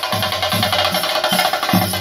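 Percussion-led music: drums beating a fast, steady rhythm with a dense high ringing layer above, the kind of drumming that accompanies a theyyam dance.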